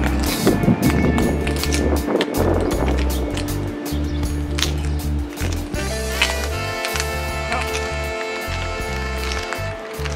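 Background music with held notes over a low bass line.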